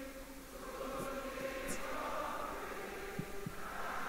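A congregation singing a hymn together, heard faintly as a blend of many voices.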